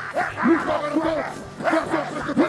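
A man's voice praying aloud into a microphone in short, rising and falling exclamations, the words not made out.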